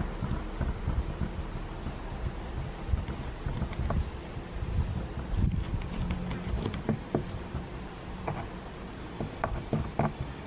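Wind buffeting the microphone in uneven low gusts, with scattered faint clicks and scrapes of a small knife cutting the gut cavity out of a whiting fillet on a cutting board.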